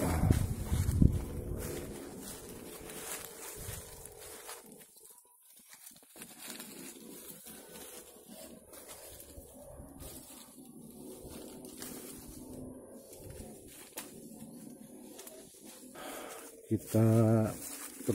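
Footsteps and rustling through dry leaf litter and undergrowth, with birds calling in the background; a louder burst of handling noise in the first second and a man's voice shortly before the end.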